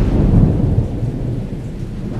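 Thunder sound effect: a sudden deep rumble that peaks about half a second in and dies away over the next second, over a steady hiss of rain.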